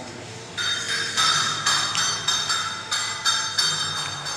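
A metal temple bell struck repeatedly, about two strikes a second, each ring overlapping the next. It starts about half a second in.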